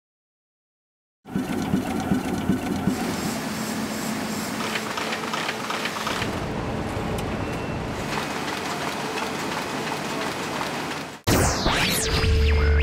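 Print-works machinery running steadily, starting about a second in. Near the end it cuts off, and a swooping sound leads into electronic music with heavy bass.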